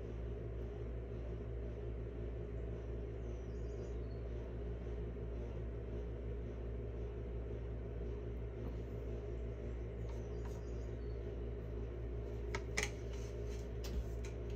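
Steady low background hum, with a single short click near the end.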